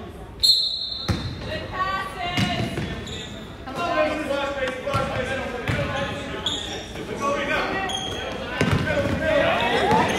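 Basketball bouncing on a hardwood gym floor, with players' and spectators' voices echoing in the hall. There is a short, loud, high shrill tone about half a second in.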